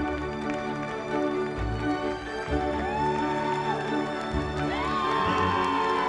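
Background music with a pulsing bass line; a melody rises into two long held notes in the second half.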